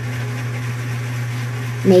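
A steady low hum with a faint hiss beneath it, unchanging through a pause in speech. A woman's voice comes back just before the end.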